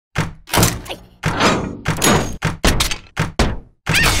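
Cartoon impact sound effects of a toy robot being jerked and slammed about: a rapid series of heavy thunks, about two a second, some with a short falling sweep.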